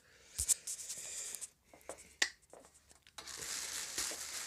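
Plastic trash bag rustling and crinkling as it is pulled off an amplifier, with a few sharp clicks and knocks. The rustle becomes steadier about three seconds in.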